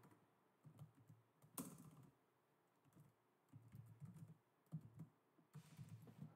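Faint typing on a computer keyboard: soft, scattered key clicks in small irregular clusters.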